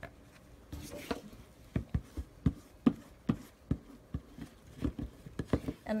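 A scraper laying cold wax and oil paint onto a painting surface, making a run of light, irregular taps and scrapes about three a second.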